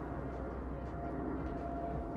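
Outdoor background noise: a steady low rumble with a faint steady hum above it.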